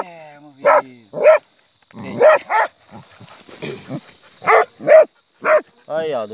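Hunting dogs barking in short, separate barks, about seven, with a long falling whine at the start: a dachshund and a beagle baying at an armadillo gone to ground in its burrow.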